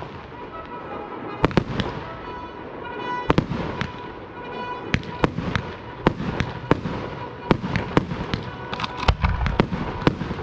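Fireworks display: a string of sharp bangs, about two a second and unevenly spaced, over a steady crackle, with a deeper boom near the end.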